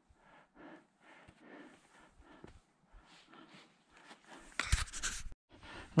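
A hiker's faint breathing on a steep climb, in short repeated breaths, with a louder rustling, crunching burst near the end before the sound briefly cuts off.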